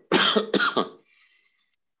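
A man coughing twice in quick succession within the first second, then quiet.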